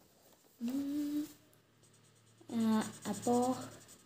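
A person's voice making short wordless hums: one held note about half a second in, then two shorter hummed phrases later on.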